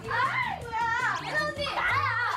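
Several young women's high-pitched voices laughing and exclaiming excitedly, over background music with a low, steady bass line.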